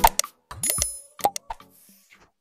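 Cartoon sound effects of a like-and-subscribe end-screen animation: a quick string of clicks and pops, a rising boing-like glide about two-thirds of a second in, and a short bright ding.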